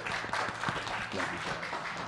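A congregation applauding: many hands clapping together in a dense, steady patter.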